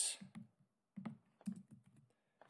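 A few computer keyboard keystrokes, sharp separate clicks about a second in and again half a second later, with fainter ones near the end, as copied text is pasted into a chat box.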